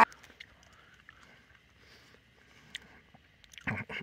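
Mostly quiet, with faint scattered soft clicks and mouth noises from a man chewing a piece of dry, sinewy kangaroo jerky. A short low voice sound comes near the end.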